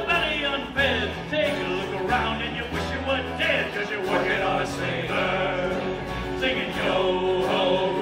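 Live pirate-themed band playing a song on acoustic and electric guitars with a rhythm section, while the band sings.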